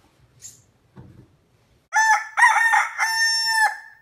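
Rooster crowing once, a cock-a-doodle-doo of about two seconds starting halfway in, with a few faint knocks before it.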